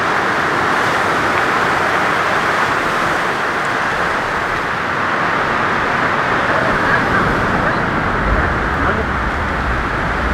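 Steady roar of ocean surf breaking on the reef, with a low rumble of wind on the microphone coming in about eight seconds in.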